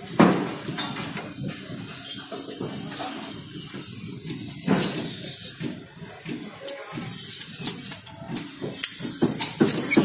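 Scattered faint clicks and knocks of a fischer injection-mortar cartridge being handled and loaded into a dispensing gun, over low site background noise, with one sharper knock about five seconds in.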